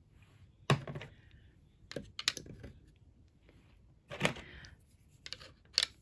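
Plastic diamond painting pens knocking and clicking against a solid-wood tray as they are set into its pin holes: about half a dozen short, separate taps and clicks with quiet in between.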